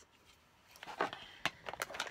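Hands handling a camera box and its contents: a few short clicks and rustles, starting about a second in.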